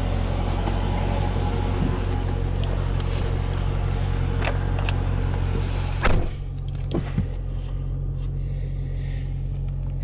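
Steady low idle hum of a 2015 Dodge Challenger R/T Scat Pack's 6.4-litre HEMI V8, heard from the driver's seat. About six seconds in, the driver's door shuts with a single thud, and the outside noise drops away to the muffled hum inside the closed cabin.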